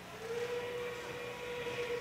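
Faint steady whine, one held tone that starts a moment in, over low background noise.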